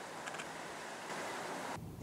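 Steady faint outdoor background hiss with no reply from the emergency bell's speaker, a few faint ticks about a quarter second in; the hiss drops out suddenly just before the end.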